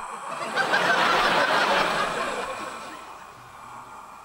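Studio audience laughing, swelling about half a second in and then fading away.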